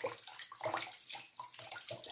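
Hot water running from a kitchen tap and splashing irregularly over a jar held beneath it into the sink. The hot water is meant to free a jar lid stuck shut by dried acrylic paint.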